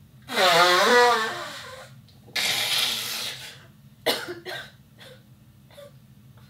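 A woman blowing her nose hard into a tissue twice while crying: first a long, wavering honk, then a shorter rush of air. Several short sniffs and sobs follow.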